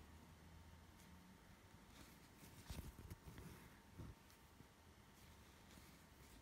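Near silence: faint rustling of a needle and embroidery thread being drawn through etamine (aida) cloth while cross-stitching, with a few soft scratches around the middle.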